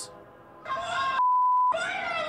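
A raised voice from a cell-phone recording, broken about a second in by a single steady censor bleep that blanks all other sound for half a second before the voice comes back.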